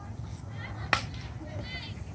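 Softball bat hitting a ball: a single sharp crack about a second in.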